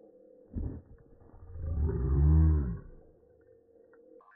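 Slowed-down slow-motion audio: a short low thump about half a second in, then a single vocal sound stretched into a very deep, drawn-out call that rises and then falls in pitch.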